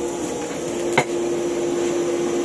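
Electric blower forcing air into a blacksmith's charcoal forge, running with a steady hum and rush of air. A single sharp click about halfway through.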